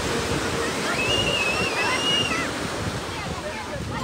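Ocean surf breaking and washing up a sandy beach in a steady rush. About a second in, a person gives one long high-pitched call that lasts over a second.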